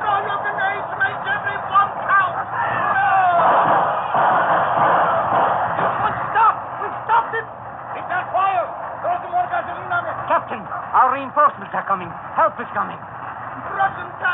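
Many men's voices shouting and yelling over a noisy din, a radio-drama battle sound effect on a narrow-band 1940s recording. The din swells most densely about three to six seconds in.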